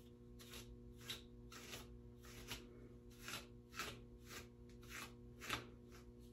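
A hand repeatedly running through and pulling at the strands of a long synthetic wig, with a faint swish at each stroke, about ten strokes at roughly two a second.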